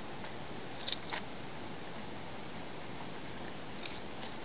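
Steady outdoor background hiss, with a few faint short clicks about a second in and again near the end.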